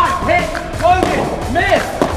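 Excited shouted voices, short rising-and-falling cries, over background music, with a few soft thumps.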